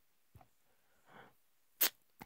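A pause between a man's sentences: mostly quiet, with a soft breath about a second in and a brief sharp mouth noise near the end.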